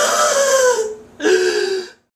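A teenage boy's voice making two drawn-out, wailing vocal sounds. The first rises and then slowly falls in pitch over about a second, and the second is lower and nearly level, cutting off just before the end.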